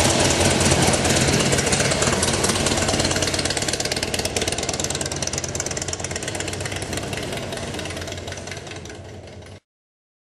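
Audience applause: dense, irregular clapping that fades gradually and cuts off abruptly shortly before the end.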